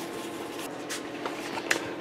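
Soft rustling and scraping from hands moving a fabric-covered model-airplane tail surface, with a few faint light clicks, over a steady low room hum.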